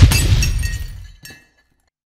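Glass-shatter sound effect: a sudden crash followed by tinkling, ringing shards that fade away within about a second and a half.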